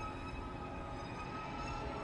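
Faint, steady whine of Kylo Ren's TIE fighter engine, several thin high tones held over a low rumble, in a hush between louder passes.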